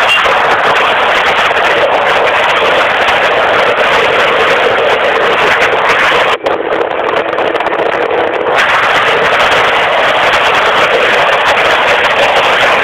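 Aprilia SR50 scooter's small two-stroke engine running, heard as a loud, steady rush of noise. It dips briefly about six seconds in, is duller for a couple of seconds, then returns to full.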